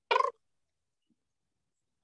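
A single brief, high-pitched vocal sound from a person, a quarter of a second long.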